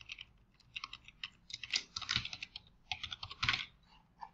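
Typing on a computer keyboard: uneven runs of quick key clicks with short pauses between them.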